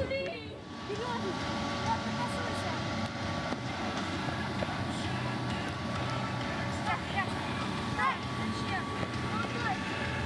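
Children's short shouts and calls over a steady murmur of outdoor background noise and a faint constant hum, with the calls coming more often in the second half.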